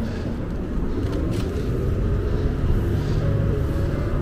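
Steady low rumble of street traffic and wind while riding an e-bike through the city, with a faint hum that rises slowly in pitch.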